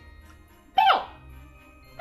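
Quiet background music, with one short vocal exclamation from a woman about three quarters of a second in, falling quickly in pitch.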